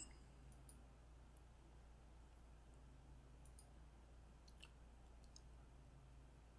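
Near silence with a few faint, scattered computer mouse clicks over a low steady hum.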